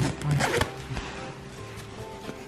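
Zipper on a padded baby stroller footmuff being pulled in one quick run in the first moment, over soft background music.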